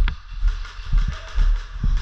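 Footsteps of a person walking with the camera on a gritty floor. They come as dull low thuds about two a second, over a steady hiss.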